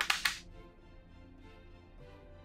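Metal latch of a small wooden safe clacking twice in quick succession as its door is pulled open, over soft background music.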